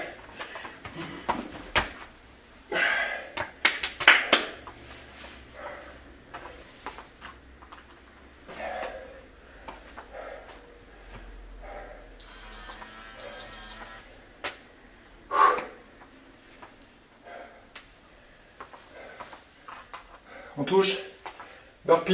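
A man's voice in short, scattered bursts with quieter stretches between, in a small room.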